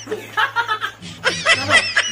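A person laughing in short snickers and chuckles, with a rapid run of high laughter pulses in the second half, mixed with a little talk.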